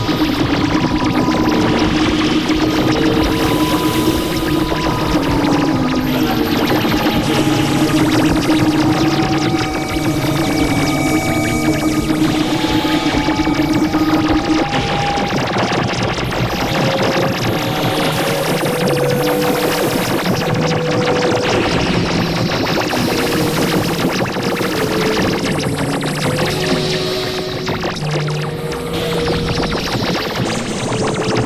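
Experimental electronic drone music from synthesizers (Novation Supernova II, Korg microKORG XL): a dense, noisy wash with a low held tone and a wavering pitch beneath it for the first half. The held tone stops about halfway, and shorter tones then come and go over the noise.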